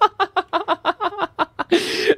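A man laughing hard in quick, rhythmic bursts, about five or six a second, with a breathy gasp near the end.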